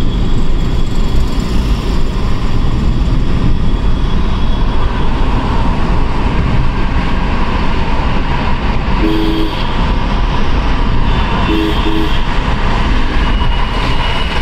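Steady road and tyre noise of a car driving through a road tunnel. A vehicle horn gives one short two-tone beep about nine seconds in and two quick beeps near twelve seconds.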